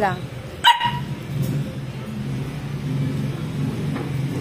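A husky puppy gives one short, sharp bark about three-quarters of a second in, over a steady low hum.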